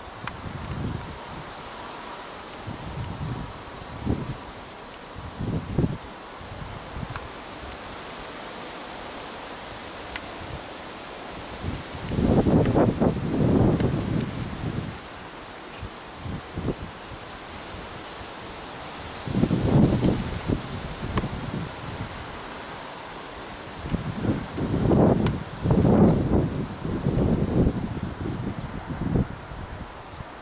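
Wind buffeting the microphone in repeated gusts, the longest in the second half, over a faint steady rustle of tree leaves.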